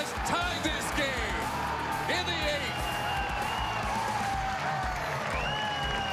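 Music with a singing voice, long held notes sliding in pitch, playing over the ballpark during a home-run trot.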